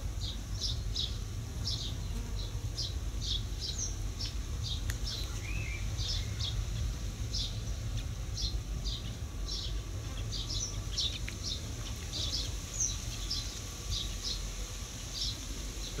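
A small songbird chirping over and over in short, high notes, about two a second, over a steady low rumble.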